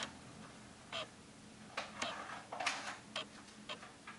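Typing on an iPhone's on-screen keyboard: about eight faint, short ticks of keystrokes, unevenly spaced, starting about a second in.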